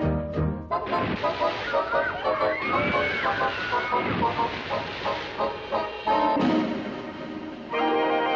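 Brassy background music that drops away about a second in under a loud rushing noise, with a few high gliding cries a couple of seconds later. The music comes back just before the end.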